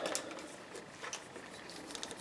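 Faint handling noise: a few light clicks and rustles from fingers on plastic trimmer line and a snap-off utility knife, with quiet gaps between them.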